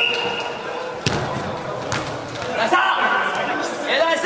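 A futsal ball kicked twice, sharp thuds about a second apart in a large indoor hall, with players' voices calling out in between.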